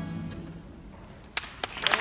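A recorded song's final held chord fades out, then after a short lull a couple of single claps ring out and audience applause starts to build near the end.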